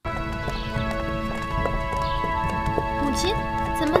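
A horse's hooves clip-clopping at a walk on stone paving, under background music of held notes.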